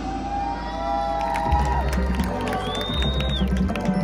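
Marching band and front ensemble playing a soft, sustained passage with low bass pulses, while the stadium crowd cheers and whoops over it; a high whistle-like cheer rises and falls about three seconds in.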